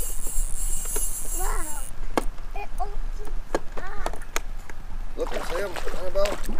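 A hooked trout splashing at the water's surface near the end as it is reeled in, amid short excited voices and a few sharp clicks.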